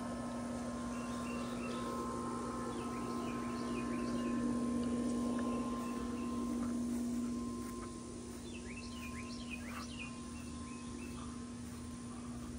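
Songbirds chirping in short high calls, in two spells, over a steady low hum that grows louder midway and eases off a little past halfway.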